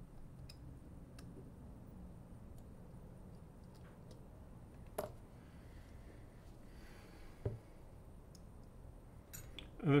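Sparse, faint clicks and taps of small watchmaking tools and parts being handled on a bench mat, with one sharper click about halfway through and a duller knock a couple of seconds later.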